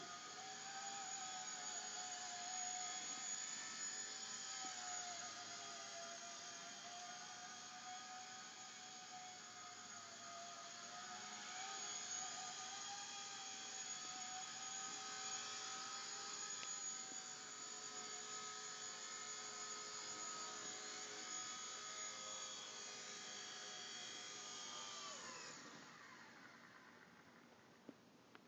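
Blade mSR micro RC helicopter in flight: a steady high whine from its small electric motors and carbon fiber main rotor blades, wavering slightly in pitch. About 25 seconds in, the whine falls in pitch and fades as the rotor spools down on landing.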